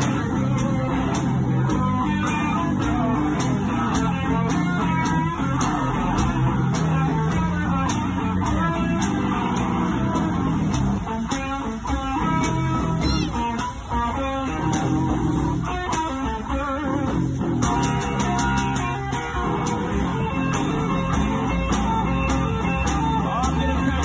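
One-man band playing an instrumental blues passage: electric guitar riffing over a steady kick-drum beat.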